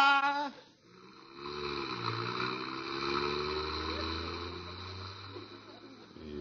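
Radio sound effect of a car engine pulling away: a steady rumble whose pitch rises slowly as it accelerates, then fades toward the end.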